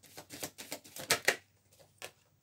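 Tarot cards being shuffled by hand: a quick run of light clicks of card on card, about eight a second, that stops about a second and a half in.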